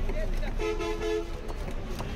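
A vehicle horn sounds once, a steady two-tone honk lasting about half a second near the middle, over street noise and voices.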